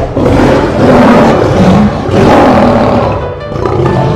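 A film lion's roar: two long, loud roars, the second shorter, with music playing underneath.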